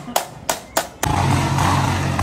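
Three quick hammer knocks on a motorcycle number plate, then, about a second in, a Royal Enfield Bullet's single-cylinder engine running steadily while the bike is ridden, with road noise.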